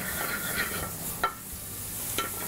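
Ribeye steak sizzling in a hot oiled skillet and Brussels sprouts frying and being stirred in a pan, a steady sizzle with one sharp click a little past halfway.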